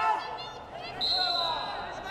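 Voices shouting from the mat side during a wrestling bout. A high, steady tone comes in about a second in and holds.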